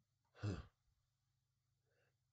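A man's single short 'huh', breathed out about half a second in; the rest is near silence.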